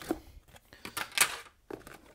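Cardboard box and paper leaflets being handled: a few short rustles and scrapes, the loudest just past a second in.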